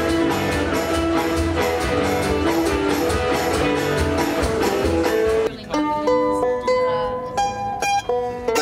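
A live band playing a steady up-tempo number on upright double bass, archtop guitar and drums, with a regular drum beat. About five and a half seconds in it cuts to a solo mandolin being picked, single notes ringing out one by one.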